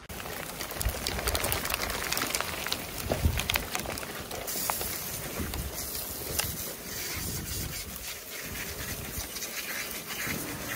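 A rain shower with hail, pattering as a dense scatter of small sharp ticks over a steady hiss that turns hissier about halfway through.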